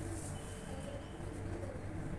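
A bird calling with a few short low calls, over a steady low hum.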